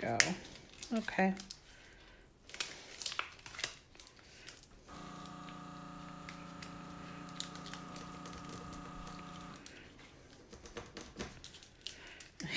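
Adhesive vinyl and transfer tape crinkling and crackling in short bursts as the design is peeled off its backing sheet. This is followed by a steady electrical hum of several pitches that lasts about five seconds and cuts off abruptly.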